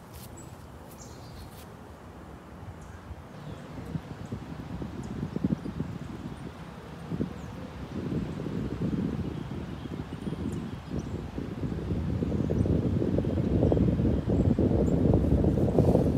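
Wind buffeting the microphone: a low, uneven rumble that swells in gusts and grows stronger over the second half.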